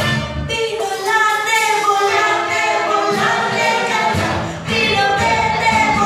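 Voices singing a Tagalog song together over backing music. The low accompaniment drops out about half a second in and comes back after about four seconds, leaving the voices over lighter backing.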